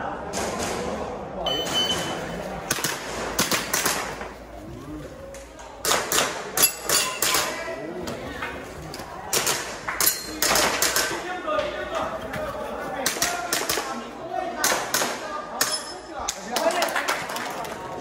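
A shot-timer start beep about a second and a half in, then strings of airsoft gas pistol shots fired in quick clusters of several shots, with pauses between them as the shooter moves to new positions, echoing in a large hall.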